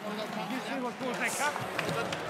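Indistinct voices talking, quieter than the commentary, over the background noise of the hall.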